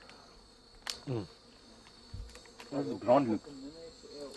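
A steady, high-pitched chorus of rainforest insects, with a few light clicks and a man's brief voice about three seconds in.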